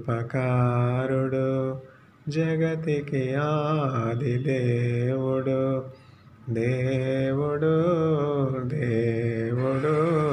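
A man singing unaccompanied in long, held notes that waver in pitch. The singing comes in three phrases, broken by short pauses about two and six seconds in.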